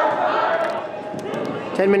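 Players' and spectators' voices calling out in a large indoor sports hall, with a few short sharp thuds of a soccer ball being kicked and bouncing on the turf, all echoing off the hall's walls.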